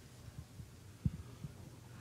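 Quiet room tone with a steady low hum and a single soft, low thump about a second in.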